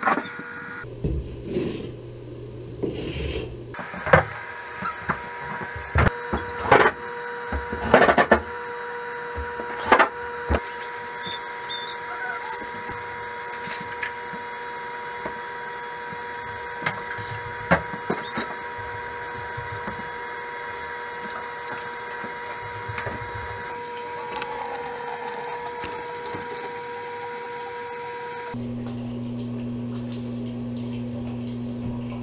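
Scattered sharp knocks and clanks of a metal pipe being handled, loudest in the first third, over a steady hum.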